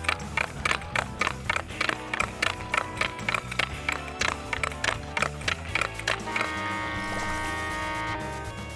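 Quick, even clicks of a hockey stick blade tapping a puck from side to side on a concrete floor, about four or five a second, over background music with a low bass line. The clicks stop about six and a half seconds in, and the music settles into a held chord.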